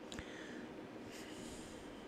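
A person's quiet breathing with a soft mouth click near the start, followed by a longer, hissy breath in about a second in, over faint room tone.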